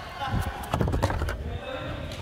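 Hands and climbing shoes knocking against plastic holds and the wall panels of an indoor climbing wall during quick, dynamic moves: a short run of knocks and thuds in the first half.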